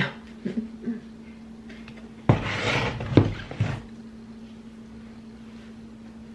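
A cardboard box being moved and set down: a scraping rustle with two or three thumps, lasting about a second and a half from a little over two seconds in, over a steady low hum.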